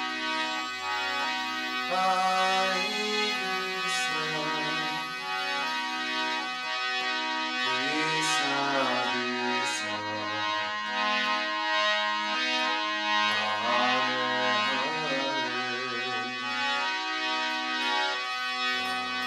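Hare Krishna kirtan music: sustained reed-organ chords, like a harmonium, moving in steps beneath a gliding melodic line. There are a few sharp high accents, about 4, 8 and 10 seconds in.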